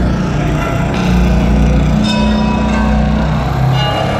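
Live drum-solo passage in an arena: a sustained low electronic drone with a few struck, bell-like pitched tones ringing over it, spaced about a second apart, heard from far back in the hall.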